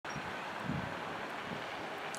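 Steady outdoor background noise with light wind on the microphone.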